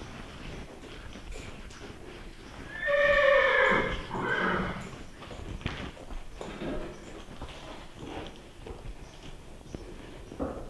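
A horse whinnying: one loud call about a second long that falls in pitch, followed at once by a shorter second burst. Faint scattered clicks and knocks come before and after.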